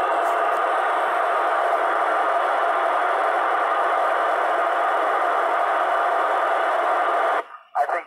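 Steady FM receiver hiss from a TYT TH-9800 transceiver's speaker on the 2 m ISS downlink: the squelch is open on a carrier-less channel between the astronaut's transmissions. The hiss cuts off abruptly near the end as the next transmission comes in.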